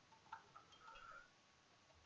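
Near silence with a few faint computer keyboard keystrokes: one tick about a third of a second in, then softer clicks around a second in.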